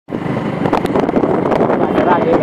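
Motorcycle running while riding along, its engine mixed with wind buffeting the microphone.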